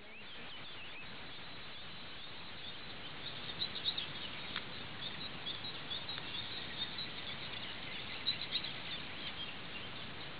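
Small birds chirping in short, high calls that begin about three seconds in, over a steady outdoor hiss.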